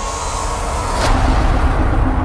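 Sound design of an animated channel-logo sting: a deep steady rumble with a sharp impact hit about a second in.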